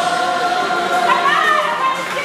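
A song sung by a group of voices together over music, with long held notes.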